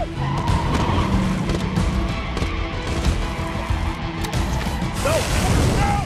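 Action-film sound mix of a van running and skidding, laid over a music score.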